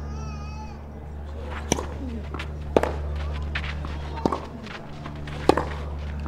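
Sharp knocks of a tennis ball on a clay court, about one every second or so, over a steady low hum. A short wavering high-pitched call is heard at the very start.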